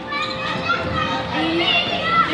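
Many young children's voices at once, chattering and calling out over each other.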